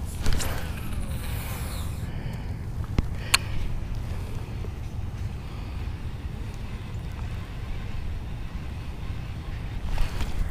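Steady low rumble of wind buffeting the microphone, with a few sharp clicks from handling the fishing rod and baitcasting reel.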